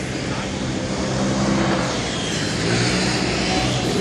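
Road traffic on a busy city street: a steady rush of passing vehicles with an engine hum that rises and falls slightly.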